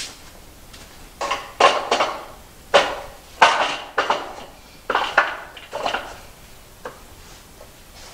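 Metal parts of an aluminium-extrusion frame clanking as they are handled and knocked together. There are about ten sharp knocks with a short ringing after each, some in quick pairs, over about six seconds.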